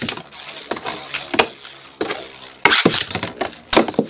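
Beyblade spinning tops whirring in a plastic stadium, with a string of sharp clashes and knocks as they hit each other and the stadium walls, the loudest a little before three seconds in and near the end.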